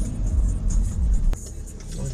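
Low rumble of a car heard from inside the cabin, with a sharp click about a second and a half in, after which it becomes quieter.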